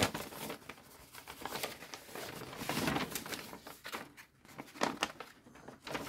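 Paper instruction sheets rustling and crinkling as they are handled, folded back and leafed through, in uneven spells with quieter gaps.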